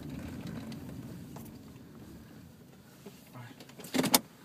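Low rumble of a moving car heard from inside the cabin, slowly fading, with a short sharp knock right at the end.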